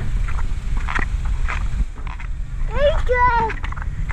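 A young child's high-pitched voice calls out briefly about three seconds in, rising and then holding its pitch. Under it runs a steady low rumble of wind on the microphone.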